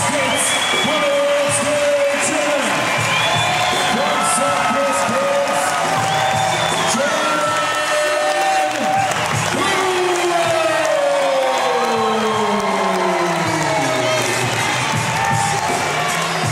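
Crowd cheering and whooping over loud music with held notes. A long downward glide in pitch comes about ten seconds in.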